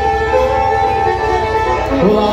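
Bluegrass band playing the instrumental lead-in to a song, a fiddle carrying the melody in long held notes over guitar and bass.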